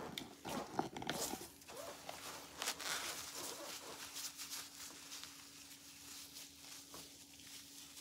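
Gloved fingers scratching and crumbling a dry, hard compressed coco coir brick in a plastic tub: faint crunching and rustling, busier in the first few seconds, then sparser. It is still dry because it has not been wetted yet. A faint steady hum runs underneath.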